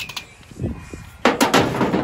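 A hammer set down on a sheet-steel work surface: a few sharp metal clanks a little over a second in, followed by a short clatter.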